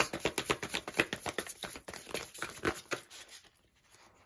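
A tarot deck being shuffled by hand: a rapid run of small card clicks and slaps that thins out and stops about three seconds in.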